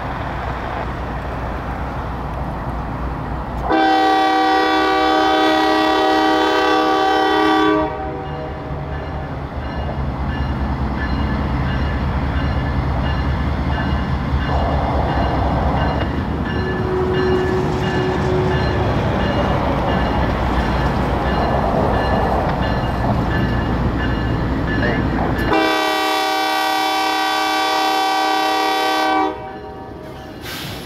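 Norfolk Southern diesel locomotive horn sounding two long blasts, one about four seconds in and one near the end, each held about four seconds. Between them the rumble of the approaching diesel locomotives grows.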